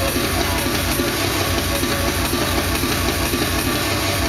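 Industrial drum and bass played loud over a club sound system. A dense, noisy texture sits over heavy bass with a fast, steady beat.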